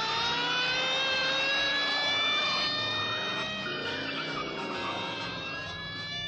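Police siren wailing. It finishes a rising wind-up in the first second, then holds one long steady tone that sags slightly in pitch toward the end.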